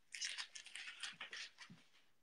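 Tape being peeled off a painted furniture piece: a few short, faint, scratchy noises at irregular intervals.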